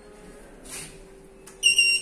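A single short, high electronic beep from the lift's control panel near the end, over a faint steady hum.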